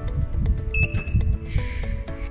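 Background music with a steady beat, over which a single electronic beep lasting under a second sounds just before the middle: the thermal receipt printer's buzzer signalling power-on.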